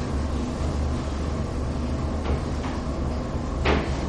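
A cloth duster wiping chalk off a blackboard: a few soft swishes, the clearest near the end, over a steady low room hum.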